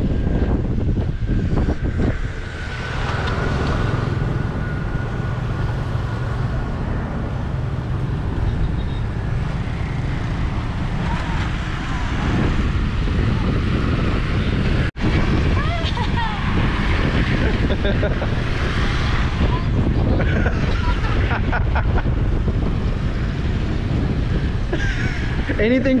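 Wind buffeting the microphone, with motorbike engines passing close by. The sound cuts out for an instant a little past halfway.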